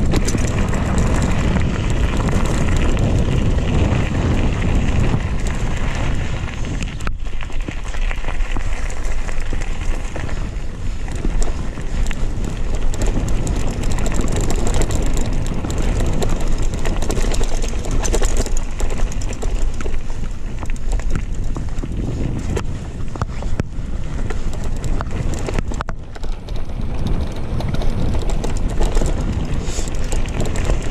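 Mountain bike riding fast over a gravel trail: wind rushes over the camera microphone, with the tyres on loose gravel and many small clicks and rattles from the bike.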